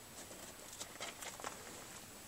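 Faint, scattered light clicks and rustling of plastic Blu-ray cases being handled.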